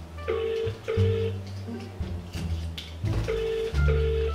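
British telephone ringing tone heard over a phone's loudspeaker while an outgoing call waits to be answered. It sounds as two double rings, one about a third of a second in and one near the end. Each is two short buzzes, the cadence repeating about every three seconds.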